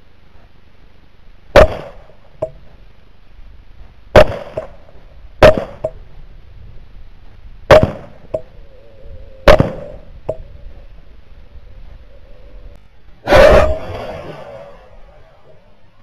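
Six rifle shots fired at feral hogs in fairly quick succession, most followed by a fainter knock a moment later. The last shot is the longest, with a tail that dies away over about a second.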